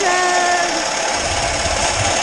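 Triticale pouring from a grain silo's auger spout into a steel trailer: a loud, steady rushing rattle of grain over the running auger. A man's drawn-out hesitation sound comes over it for the first second.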